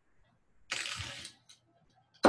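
Cardboard spool-holder pieces being handled: one brief scraping rustle of about half a second, followed by a small click.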